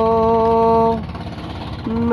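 A singer holds one long, steady sung 'ho' at the end of a line of a Hindi-Urdu song, breaking off about a second in. A steady low rumbling noise underlies it and fills the gap until the next line starts near the end.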